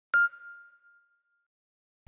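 A single bright ding, the chime of a logo-intro sound effect: struck once at the very start, its clear tone ringing out and fading over about a second.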